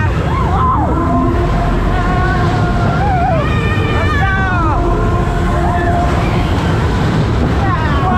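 Fairground spinning ride running at speed, heard from a rider's car: a loud steady rumble, with riders' high screams and whoops rising and falling over it.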